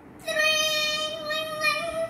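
A young girl singing one long, steady, high note that holds its pitch for well over a second.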